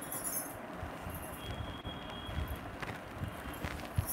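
Quiet handling of a silk saree as it is passed over and gathered up: faint fabric rustling and a few soft knocks over low room noise.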